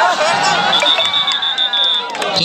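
Spectators shouting and cheering at a kabaddi tackle, with a referee's whistle sounding a long, steady high blast from just under a second in.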